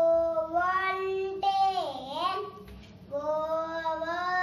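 A child singing a slow, wordless-sounding tune in long held notes, the pitch swooping down and back up about two seconds in; after a short break a new phrase starts near the end.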